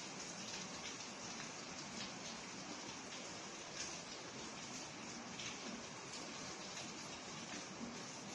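Steady faint hiss of background noise, with a few faint soft ticks.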